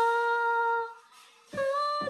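A female voice singing a Catholic hymn with digital piano accompaniment: a held note ends about a second in, a brief pause follows, then piano chords and the voice start the next phrase on a higher note.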